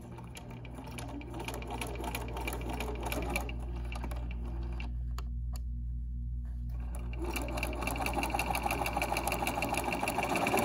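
Domestic sewing machine stitching a quarter-inch seam through layered quilting cotton, its motor humming under rapid needle clicks. The stitching eases off briefly about five seconds in, then runs on louder for the last few seconds.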